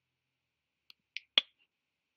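Dead silence, then a short breathy hiss and one sharp click about a second and a half in.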